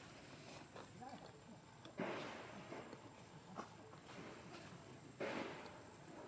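Macaques giving two short harsh calls about three seconds apart, each starting suddenly and fading within a second, over a faint outdoor background.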